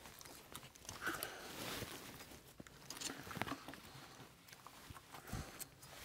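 Faint, irregular crunches and scuffs of someone moving over gritty earth and stone rubble.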